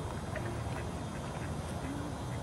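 A few short duck quacks from the lake over a steady low rumble of wind on the microphone.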